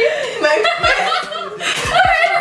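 Two women laughing loudly together, with bits of voiced chuckling mixed in.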